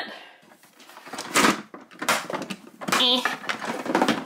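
Hard plastic toy jet (L.O.L. Surprise! OMG Remix plane) being handled and turned onto its side: a few knocks and clatters of plastic, the loudest about a second and a half in.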